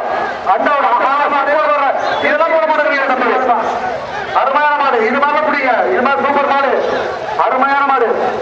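A man speaking continuously in running commentary, with hardly a pause.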